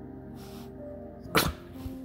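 Background music, with one sudden sharp burst, the loudest sound, about one and a half seconds in: a Boston terrier sneezing.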